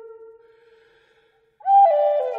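Flute-like wind instrument music: a long held note fades away over about a second, there is a brief silence, and then a new phrase comes in loud and steps down through three notes to a held low note.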